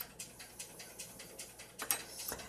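Faint, quick, even ticking, about six ticks a second, with a couple of louder clicks near the end.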